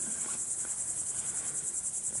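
Crickets chirping: a steady, high-pitched trill with a rapid, even pulse.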